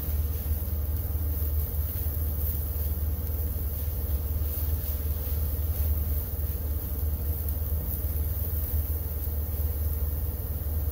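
Oyster mushrooms frying in oil and butter in a hot wok, a faint sizzle over a steady low hum.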